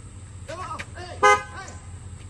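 A single short car-horn honk a little past a second in, from the white Cadillac Escalade SUV; it is the loudest sound here.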